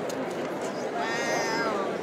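One drawn-out, high-pitched voice call about a second in, rising and then falling in pitch, over steady crowd chatter.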